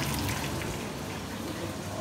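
Steady crackling sizzle of food frying in hot oil.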